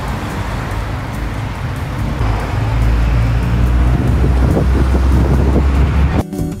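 Road traffic going by along a street, with wind rumbling on the microphone; the low rumble grows louder from about halfway through.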